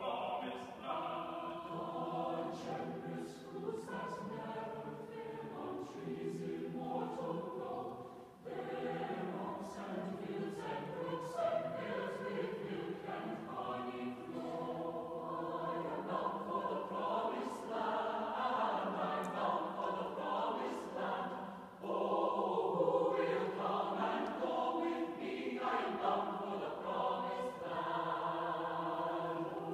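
A mixed choir singing unaccompanied in a large, reverberant concert hall, in long sustained phrases with short breaks at about eight and twenty-two seconds in.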